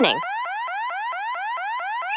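Electronic alarm sound effect: a rapid chain of short rising whoops, about five a second, sounding an emergency.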